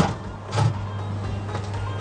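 An oven door and a clay tagine being handled: a sharp knock right at the start and a duller one about half a second later, over a steady low hum.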